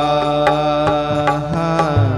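Hindu devotional kirtan: a man singing long, held notes into a microphone, accompanied by tabla strokes and low drum notes.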